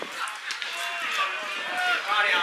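Footballers' shouts and calls across an open pitch during play, with a short sharp knock about half a second in.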